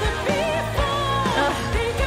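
Symphonic rock song playing: a female lead vocal sung with vibrato over a full band with drums.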